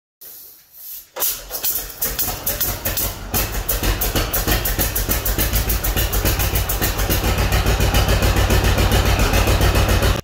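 An old tractor engine starting, catching about a second in, then running with evenly spaced exhaust beats that quicken from about three to about seven a second. It cuts off suddenly at the end.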